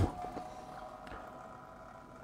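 Quiet room tone with a faint steady hum and a few soft clicks.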